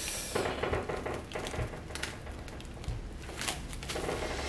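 Plastic cling film crinkling and rustling under gloved hands as a wrapped guitar is pressed down into the case's soft filler, with scattered small clicks and a couple of soft knocks.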